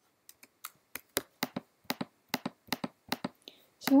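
Computer keys tapped in quick succession: a run of about sixteen sharp clicks, some in close pairs, at roughly four a second.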